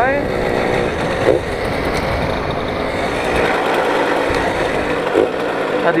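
Simson moped's small two-stroke engine running on the move, with wind and road noise over the microphone; the low wind rumble thins out about halfway through.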